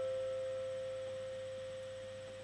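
A held piano note slowly dying away, one clear tone with faint overtones and no new notes struck.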